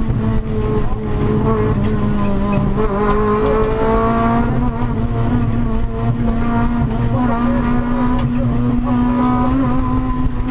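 Honda Civic rally car's engine heard from inside the cabin, held at steady high revs under load; its pitch dips slightly and climbs again about three seconds in.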